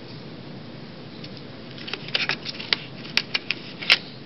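Fingers rummaging through a small metal tin of tinder, with rustling and a run of sharp clicks and taps that starts about a second and a half in and gets sharper near the end.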